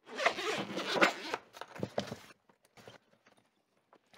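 The zipper of a padded trumpet case being pulled open, a rasping run of about two seconds that then stops.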